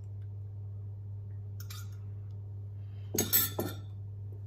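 Metal cutlery against a glass measuring jug while beaten egg is scraped out: a brief scrape a little after one and a half seconds in, then a louder cluster of clinks as the spoon is set down in the jug near the end.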